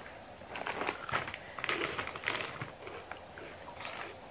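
A plastic bag of Hot Cheetos crinkling in irregular, quiet crackles as it is handled.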